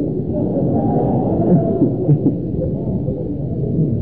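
A man's voice sustained in drawn-out tones that glide and waver in pitch, with little break, on a dull, muffled old recording.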